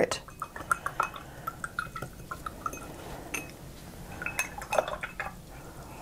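Paintbrush being rinsed in a glass jar of water: a quick run of small clinks of the brush against the glass with light sloshing, then a few more clinks about four seconds in.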